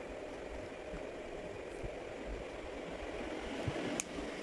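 Steady background noise, with a single light click at the very end as a fingernail prises at the edge of a Samsung Galaxy J2's snap-fit plastic back cover.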